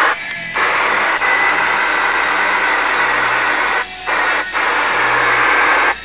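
CB radio receiver putting out loud static hiss through its speaker after a short burst, cutting out briefly twice near the end.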